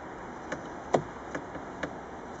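Four short clicks about half a second apart, the second the loudest, from handling the frames of an open wooden Zander beehive.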